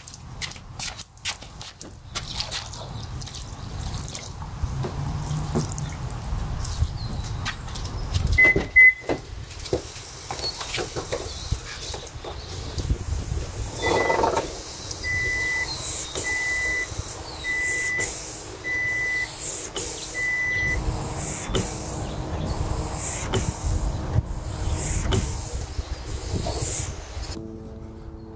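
A 2007 Toyota Prius's rear washer sprays about halfway through. The rear wiper then sweeps its newly fitted blade back and forth across the wet glass, a swish about every 1.2 seconds. A short electronic beep repeats at the same pace for the first several sweeps.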